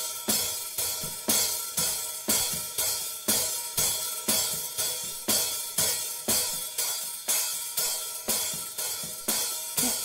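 Hi-hat track from a multitrack drum recording playing back, a steady pattern of hi-hat strokes at about two a second, through a high-pass EQ filter that is cutting away its excess low end.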